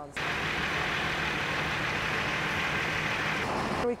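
A parked utility bucket truck's engine idling steadily: a constant low hum under an even hiss, cutting in suddenly at the start.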